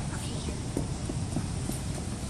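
Walking footsteps heard as light, irregular knocks about twice a second, over a steady low rumble from a handheld phone microphone being carried.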